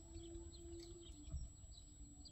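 Faint, scattered chirps of small birds over quiet outdoor background, with a faint steady hum underneath.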